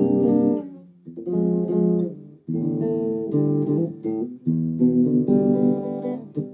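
Squier Deluxe Hot Rails Stratocaster electric guitar played through a small amp on the bridge-and-middle pickup setting: single chords strummed about every one and a half seconds, each left to ring for about a second.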